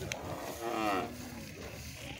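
A cow mooing once: a short call of about half a second that falls in pitch.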